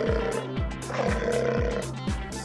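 Background music with a steady drum beat, and a cartoon lion's roar sound effect about a second in, after the tail end of another at the very start.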